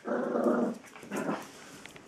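Small dog growling at a person's feet: a longer growl at the start, then a shorter one about a second in.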